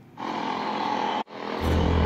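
A motorcycle engine, the rider's own Suzuki GS150 SE, running steadily on the road, cutting in with a deep hum about three quarters of the way in after a sudden brief dropout. Before the dropout there is about a second of a steadier, higher hum.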